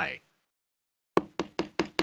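A quick run of about six sharp knocks, a hand rapping on a hard surface to act out a knock at a door, starting just over a second in after a moment of silence; the first knock is the loudest.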